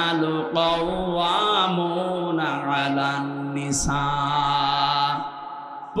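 A man's voice chanting a Quranic verse in long, drawn-out melodic notes, in the tilawat style of recitation. It trails off about five seconds in.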